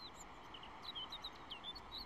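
Faint birds chirping: a scattering of short, high chirps over a quiet background hiss.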